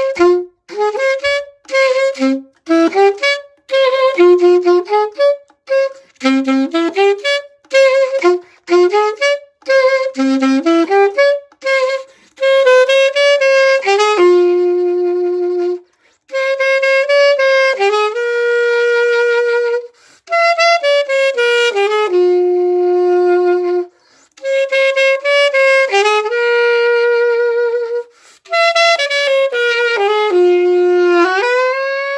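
Unaccompanied alto saxophone playing a melody: quick, detached notes for the first half, then longer held notes in phrases broken by short pauses for breath.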